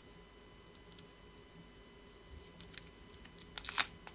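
Small clear plastic resealable parts bag being handled between the fingers. It is quiet at first, with a few short crinkles and clicks of the plastic near the end.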